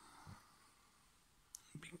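Near silence: faint room tone, then a sharp click and a person starting to whisper near the end.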